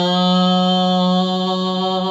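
A man singing unaccompanied, holding one long, steady note on the last syllable of a sung phrase.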